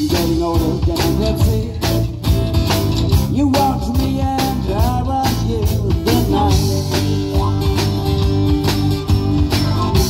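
Live band playing a song with a steady drum beat: drum kit, electric bass, acoustic guitar and organ, with a woman's singing voice heard at times.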